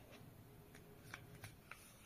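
Faint clicks and taps from handling a smartphone and its plastic case, about five light ticks spread over two seconds.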